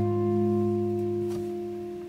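An acoustic guitar chord left to ring, its held notes slowly dying away.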